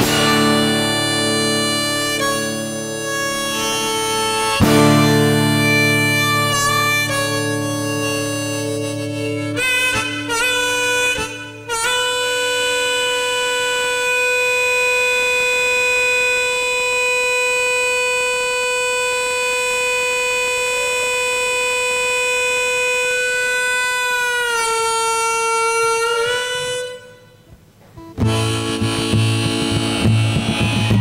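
Harmonica solo played from a neck rack over strummed acoustic guitar: a run of short notes, then one long note held for about twelve seconds that bends down and breaks off. The sound drops out for about a second near the end before the strumming starts again.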